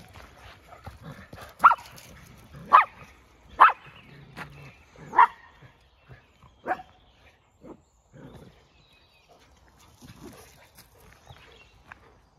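A dog barking in play, five short sharp barks spaced about a second apart, then quiet.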